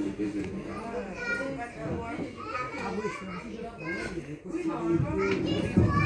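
Children's voices: chatter and calls of children playing, rising louder near the end.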